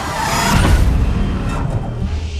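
Movie sound effects of a speeding car: a loud rush with a low rumble in the first second or so that eases off, over trailer music.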